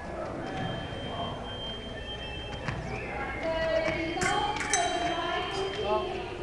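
Indistinct voices of people talking in a large hall, with a few sharp metallic clicks that ring briefly, clustered about four to five seconds in.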